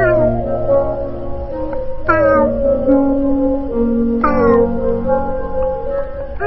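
A song sung in cat meows, an AI meow-voice cover, over a backing track. Three drawn-out, falling meow notes come near the start, about two seconds in and about four seconds in.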